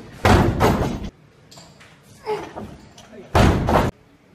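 A loaded barbell with bumper plates hitting a wooden lifting platform during a snatch, with two loud thuds: one about a quarter second in and one shortly before the end that cuts off suddenly. Voices call out between them.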